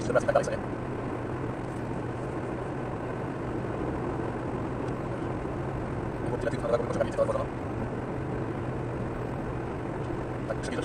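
Steady road and engine noise heard from inside a car's cabin while cruising at about 88 km/h on an expressway: a constant low drone under a wide even rush of tyre noise.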